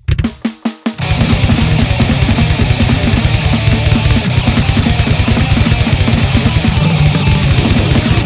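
A grindcore band starting a song: a few separate hits in the first second, then drum kit, electric bass and electric guitar come in together about a second in and play loud and dense, with rapid drum strikes.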